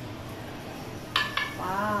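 Metal tongs clinking twice in quick succession, each with a brief metallic ring, as a stir-fry is scraped out of a pan onto a plate. A voice starts near the end.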